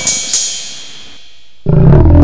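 A hip-hop beat with a hi-hat about four times a second stops shortly after the start and fades out. About one and a half seconds in, a man's voice saying 'hello', slowed right down, comes in suddenly, loud and deep like a lion's roar.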